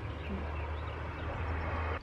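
Steady outdoor background noise with a low rumble.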